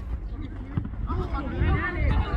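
Indistinct voices calling out, starting about a second in, over a low rumble.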